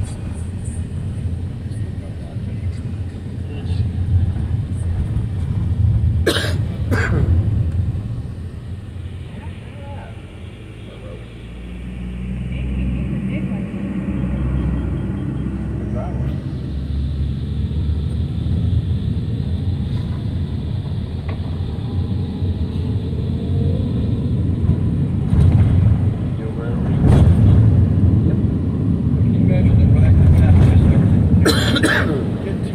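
A car driving along a road: a steady low rumble of engine, road and wind noise that drops quieter around ten seconds in, then builds again. A few sharp clicks or knocks, about six and seven seconds in and again near the end.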